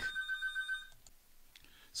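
A telephone ringing in the background: a high-pitched electronic trill that stops about a second in.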